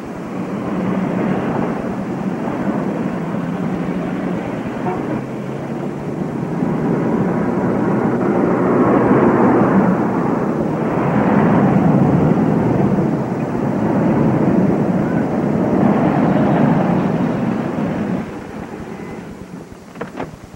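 Motor vehicle noise, swelling and fading several times as if vehicles are passing.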